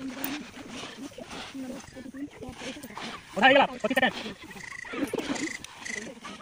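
Voices of a group outdoors, with one loud, drawn-out call about three and a half seconds in, its pitch rising and then falling.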